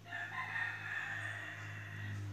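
An animal's call, one long cry of about two seconds that starts suddenly, over a steady low hum.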